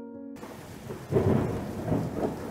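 Rain falling steadily with rolls of thunder, starting about a third of a second in as a held chord of background music dies away.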